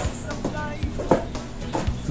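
Wooden pestle pounding banana in a wooden mortar, a dull knock about every half second, over background music.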